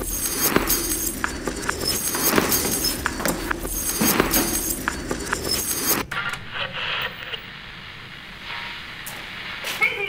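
A dense, layered patter of found-object percussion: sharp knocks and bright, glassy clinks and rattles. It cuts off suddenly about six seconds in, leaving a quieter, softer layer.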